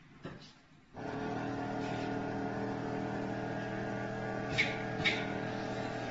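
Steady machine hum of the robot's motors, several fixed tones together, switching on suddenly about a second in. Two short sharp clicks come near the end.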